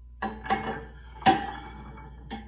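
Steel disc-harrow parts clinking as a spacer is slid down the axle onto the stacked discs: three sharp metal clinks with short ringing, the loudest a little over a second in.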